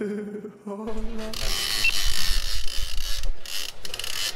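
A song ends about a second in. It gives way to a steady rush of wind on the microphone, with irregular low buffeting rumble.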